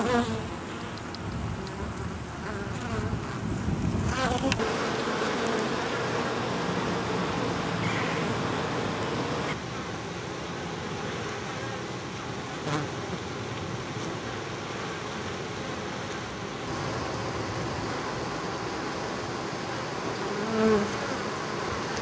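Steady buzzing of a honey bee colony crowding and flying about the entrance to its nest in a tree hollow, many bees close to the microphone. There is a brief louder swell near the end.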